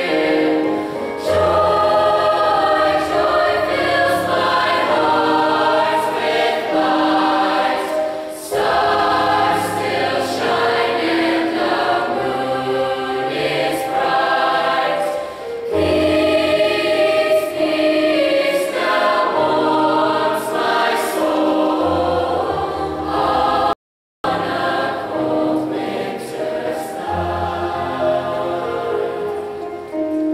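A large mixed choir singing sustained chords in long phrases. The sound cuts out completely for about half a second near the end.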